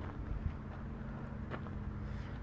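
Faint outdoor background with a low steady hum, like a distant engine, and a few light clicks.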